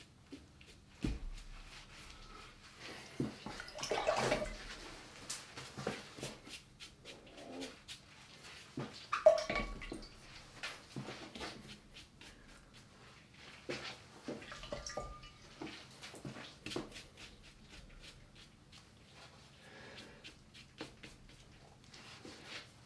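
Paintbrush working watercolour over dry paper and dipping into water and paint pots: scattered soft brushing strokes, dabs and light taps, with a few louder wet swishes.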